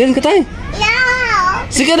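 A young child's voice making sounds without clear words: short sounds at first, then one long call that rises and falls, and more short sounds near the end.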